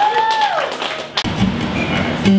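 Audience clapping with one voice calling out in a rising-then-falling cheer. About a second in it cuts off suddenly and an acoustic guitar starts playing, with low sustained notes.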